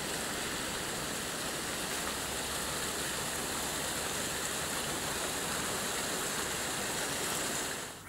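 Steady, even rushing of running water with no let-up, cutting off abruptly near the end.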